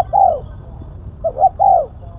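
Spotted dove cooing: two song phrases about a second and a half apart, each a couple of short quick notes and then a longer arched coo.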